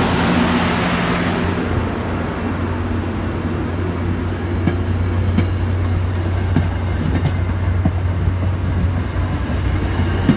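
MBTA commuter rail coaches rolling past close by: a steady low rumble with sharp wheel clacks over the rail joints. The clacks come closer together toward the end.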